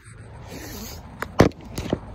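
Handling noise from a phone camera being moved and set down on the ground: a soft rustle, then a few sharp knocks, the loudest about one and a half seconds in.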